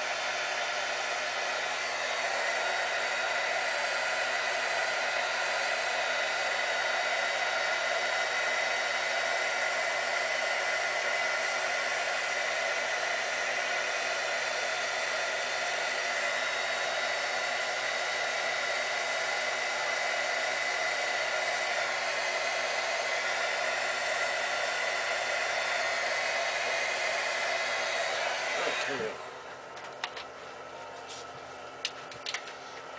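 A corded handheld electric tool runs steadily with a blowing hiss and a thin high whine. Just before the end it is switched off and its motor winds down in pitch.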